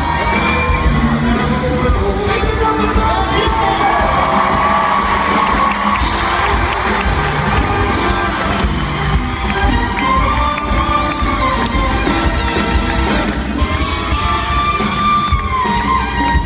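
Live big-band swing playing an instrumental passage, with held horn lines over bass and drums, and an arena crowd cheering and whooping over it.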